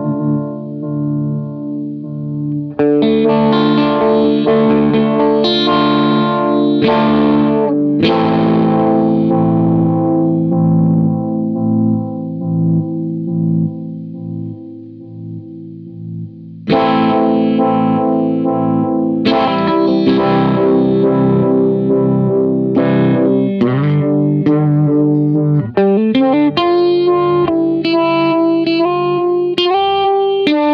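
Electric guitar played through a Poison Noises Lighthouse Photo-Vibe vibrato/phaser pedal: chords strummed every few seconds and left to ring and fade, with a quicker run of notes near the end.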